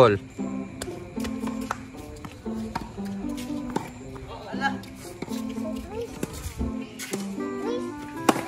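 Background music with a steady melody, heard over a tennis rally: sharp knocks of the ball on racket and court, and brief calls from the players.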